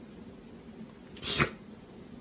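A kitten sneezing once about halfway through: a short, breathy burst that swells and stops abruptly, over faint room noise.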